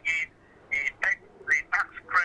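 A man speaking in short, halting bursts of syllables with brief pauses between them.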